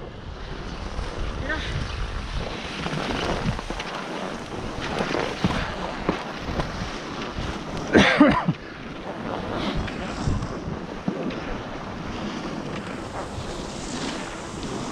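Wind buffeting the microphone and skis hissing and scraping over packed snow while skiing downhill. A short call from a voice about eight seconds in.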